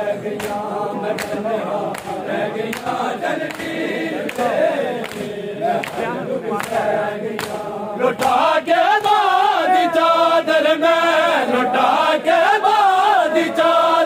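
A large crowd of men chanting a noha together, kept in time by a steady rhythm of sharp chest-beating (matam) slaps. About eight seconds in, the singing becomes louder and stronger.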